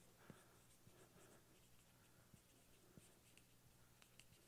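Near silence, with faint squeaks and taps of a marker writing on a whiteboard.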